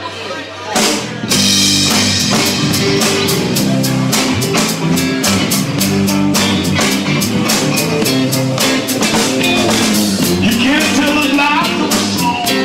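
Live folk-rock band playing an instrumental passage on drum kit, electric guitars and bass, dropping briefly quieter at the start and then coming back in loud about a second in. A harmonica comes in near the end.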